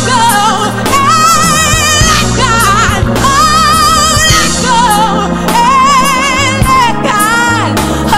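A woman singing a gospel song live with keyboard and band accompaniment: long held notes with wide vibrato, joined by quick melodic runs.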